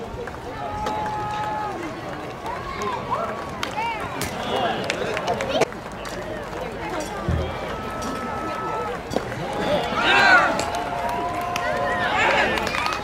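Spectators' voices at a baseball game: scattered calling and shouting with a few long drawn-out yells, a single sharp knock about halfway through, and louder shouting near the end.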